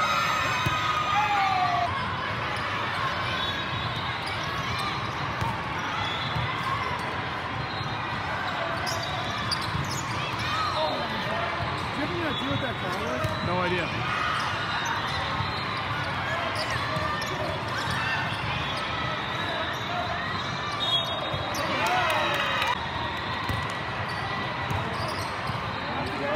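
Indoor volleyball play in a large, echoing hall: the ball being hit and bouncing, and players calling out, over a steady babble of voices from the many courts around.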